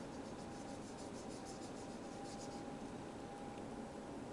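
Felt-tip marker scribbling on a wooden popsicle stick in quick back-and-forth strokes. The strokes stop about two and a half seconds in.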